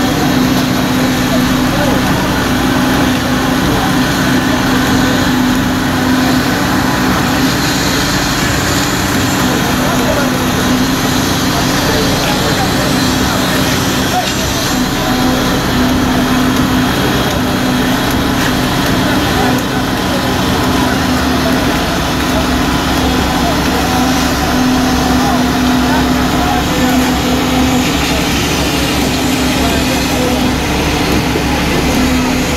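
Construction machinery engine running steadily with a constant low hum, with workers' voices in the background.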